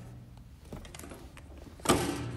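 Quiet handling sounds: a few faint light clicks of a hand on a grill's rubber gas hose and brass fitting, with the background hiss rising suddenly near the end.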